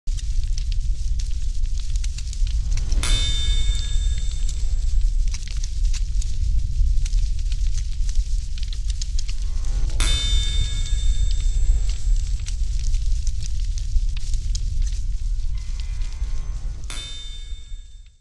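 Forge fire rumbling and crackling, with three ringing metallic clangs about seven seconds apart from a hammer striking hot steel on an anvil; it fades out near the end.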